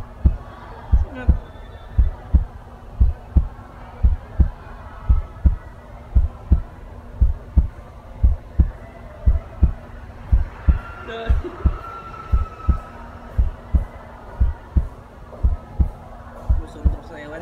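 Heartbeat sound effect: steady paired low thumps, lub-dub, about once a second, over a steady low hum.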